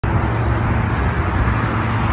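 Steady outdoor roar of road traffic, heavy in the low end, with no single event standing out.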